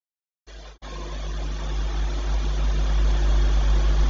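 The sound cuts out to dead silence for about half a second, then a steady rushing background noise with a low hum comes in. It swells steadily louder over the next three seconds. This is typical of the room and sound-system noise being turned up by automatic gain during a pause in the speech.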